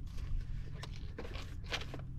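A few short, irregular scrapes and rustles of an angler handling his spinning rod and reel at the bow of a skiff, over a steady low rumble.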